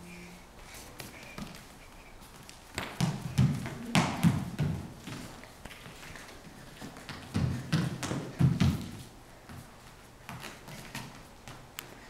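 A small child's feet in soft ballet slippers thumping and tapping on a studio floor as she dances, in two runs of quick steps, about three seconds in and again about seven and a half seconds in.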